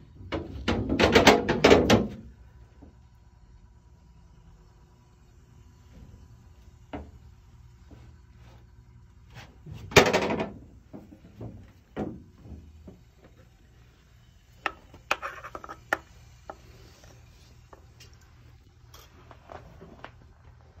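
Intermittent knocking and scraping on metal over a low steady hum, with a loud burst of rapid scraping about a second in, another about halfway and a cluster of knocks later.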